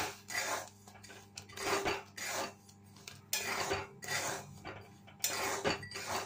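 Metal spatula stirring black chickpeas through hot salt in a steel kadai: repeated scraping strokes, the grains hissing and rattling against the metal, about one stroke every half second to second. This is dry roasting, the stage where the chana are turned in the hot salt until they puff up.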